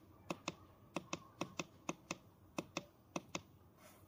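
Push buttons on the front panel of a handheld fish camera monitor being pressed: six quick double clicks, press and release, roughly half a second apart.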